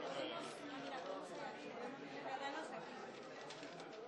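Indistinct chatter of several people talking at once in a room, with a few short rustles of paper ballots being handled.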